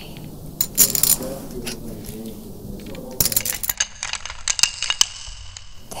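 Poker chips clinking against each other: a few scattered clicks in the first two seconds, then a quick run of clinks through the second half.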